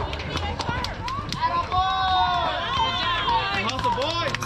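Several voices shouting and cheering from the crowd and dugout as runners cross home plate, with scattered sharp claps or clicks.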